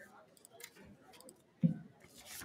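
Quiet room sound with a few faint clicks, and one short dull thump near the end.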